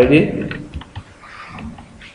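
Typing on a computer keyboard: a string of short, irregular key clicks.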